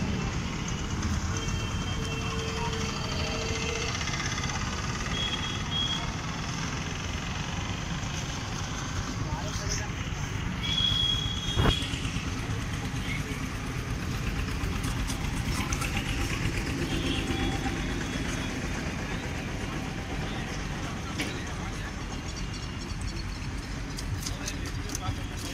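Steady roadside traffic noise with background voices, a few short steady tones over it, and a single sharp click about halfway through.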